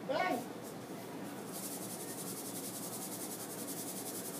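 A hand-held salt grinder being twisted over pork chops. From about a second and a half in there is a fast, fine, high-pitched clicking rasp from its grinding mechanism.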